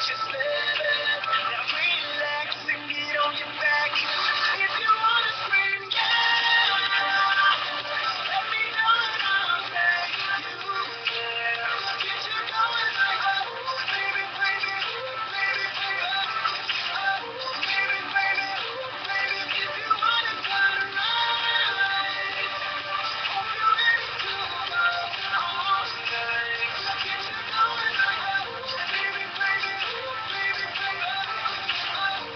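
A song with sung vocals and instrumental backing, playing on a radio in the room.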